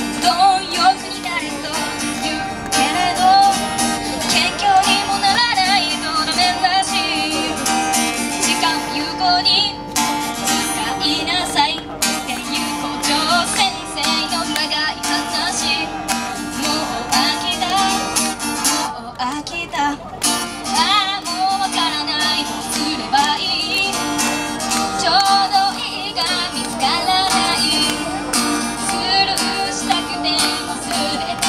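A young woman singing a song while accompanying herself on a steel-string acoustic guitar.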